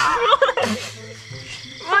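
Brief wavering laughter in the first half second, then a voice starting up near the end, over a steady night chorus of frogs and insects.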